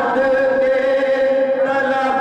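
A man singing a devotional naat in Urdu/Punjabi style into a microphone, holding one long, steady note that wavers slightly near the end.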